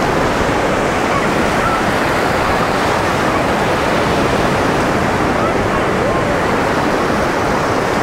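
Black Sea surf, a steady rush of small waves breaking and washing up onto a sandy shore, with faint voices of people in the distance.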